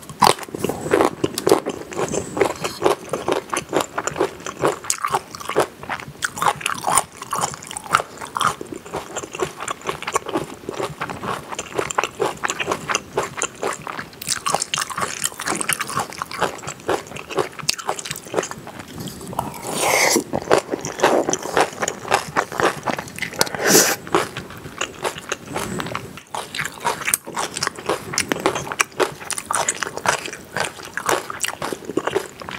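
Close-miked eating: crunchy bites and steady chewing of spicy kimchi pasta and a firm yellow side dish, crisp crackles running on without a break. A louder, longer eating sound comes about twenty seconds in.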